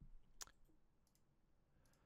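A few faint computer clicks in the first half second, the clearest about half a second in; otherwise near silence.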